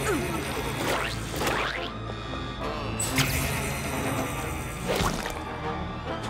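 Cartoon soundtrack music with a steady low pulse, overlaid by several whooshing, squishy sound effects, the strongest about a second, a second and a half, three seconds and five seconds in.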